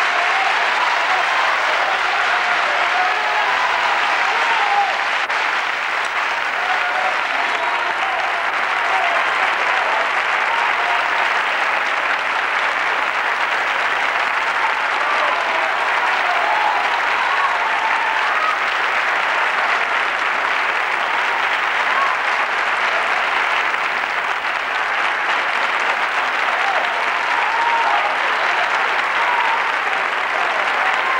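Large studio audience applauding, a steady, unbroken round of clapping.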